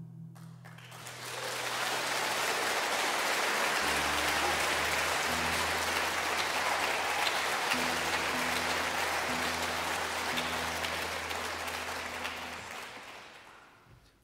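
Concert-hall audience applauding at the end of a song. The applause swells about a second in and dies away near the end, with low steady notes sounding beneath it through the middle.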